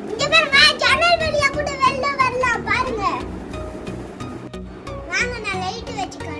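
A young child's high-pitched voice calling out for about three seconds, and again briefly near the end, over background music.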